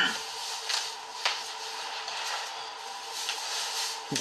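Cloth rustling with a few faint scattered clicks and knocks as a man pulls on his socks sitting on a bed, over a faint steady hum.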